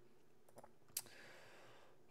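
Near silence with a faint tick about half a second in and one sharp click about a second in, from a computer mouse as the web page is scrolled.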